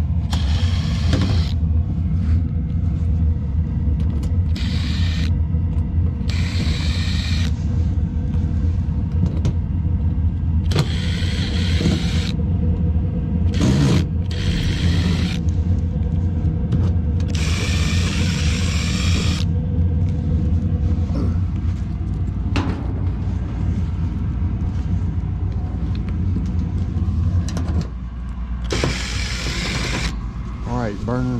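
A Makita 18V cordless impact driver runs in about seven short bursts, backing out sheet-metal panel screws. Under it is a steady low hum from the fired-up Carrier gas pack, which drops near the end.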